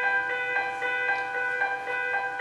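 Instrumental backing music with no singing: a gentle accompaniment of notes struck about twice a second and left ringing.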